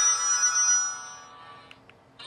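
A push-button feature phone's melodic ringtone for an incoming call, fading out over the second half as the call is answered, with two light key clicks near the end.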